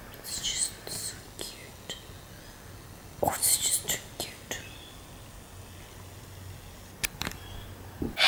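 Soft whispering in a few short breathy bursts, with a couple of sharp clicks near the end.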